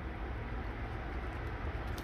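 Steady, even background hiss with a low rumble beneath it, without distinct knocks or other events: the ambient noise of a greenhouse.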